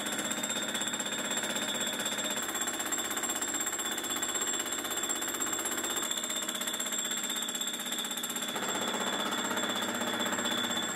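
Milling machine fly cutter taking a facing pass across a metal plate: the single tool bit's interrupted cut makes a fast, steady rattle, over a steady high-pitched whine.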